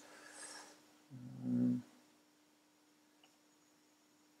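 A short low hum with an even, buzzy tone, lasting under a second, about a second in, over a faint steady hum.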